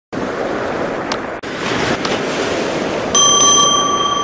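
Steady rush of wind and surf, with a brief dropout about a second and a half in. About three seconds in a bright bell ding rings out and holds: a notification-bell sound effect for a subscribe-button animation.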